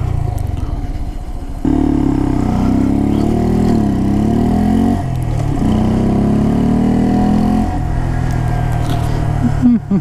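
Honda Grom's 125 cc single-cylinder engine pulling away under throttle. It gets louder about two seconds in, rises and falls in pitch through the middle, runs steadily for a while, then eases off near the end.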